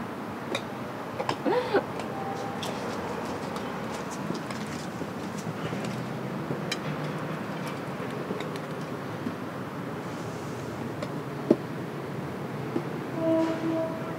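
Pleaser BEYOND-2020 10-inch platform heel boots stepping on a concrete walkway: sparse, irregular heel clicks over a steady outdoor background noise.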